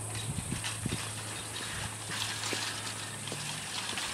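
Footsteps climbing trail steps: irregular short knocks, several a second, over a steady high hiss.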